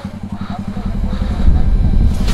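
Motorcycle engine idling with a steady rapid pulse, joined by a louder, deeper rumble from about a second in.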